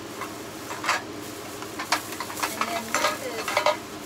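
Thin plastic bag crinkling and rustling as artificial flowers are pulled out of it: a run of short, irregular crackles, busiest in the second half.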